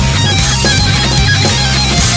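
Heavy metal music in an instrumental stretch between sung lines, with electric guitar playing loudly over a sustained low end.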